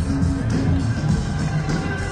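Live band music with heavy bass and a steady drum beat.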